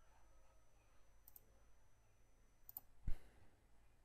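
A few faint computer mouse clicks as sketch curves are selected one at a time, with one louder, low thump about three seconds in.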